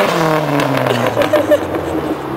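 Dodge Neon SRT-4's turbocharged four-cylinder engine with its revs falling off after a burnout, the pitch dropping steadily as the car pulls away.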